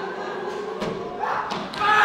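Several thuds of actors' feet and bodies on the stage floor in quick succession, with a loud male voice shouting in the second half.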